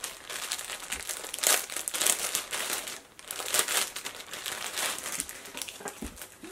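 Clear plastic packaging bag crinkling steadily as it is handled and opened to pull out a pair of underwear, with a brief lull about three seconds in.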